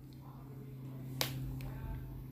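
A sharp click about a second in, then a couple of fainter ticks, as a knife is put to a green capsicum on a bamboo cutting board. A low steady hum runs underneath.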